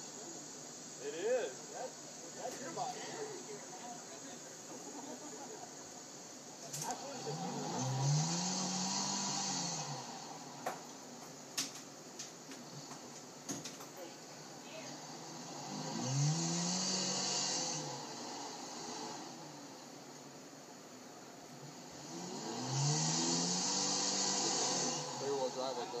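A 1985 Toyota pickup's engine revving up and falling back three times while the truck climbs a sandy hill, each rev lasting two to three seconds.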